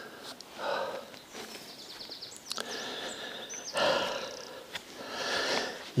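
A man's breathing picked up close by a clip-on microphone while he walks: a sniff or breath about every second and a half, the loudest about four seconds in.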